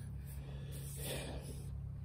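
Quiet pause with a steady low hum and a soft breath close to the microphone about a second in.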